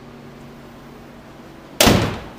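Jeep Wrangler's hood slammed shut: a single loud bang near the end, with a brief ringing echo.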